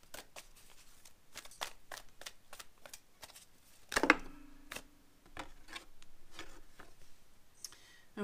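A large oracle-card deck being shuffled by hand: a run of soft, irregular card taps and slaps. About halfway through comes a louder slap, followed by a brief hummed tone.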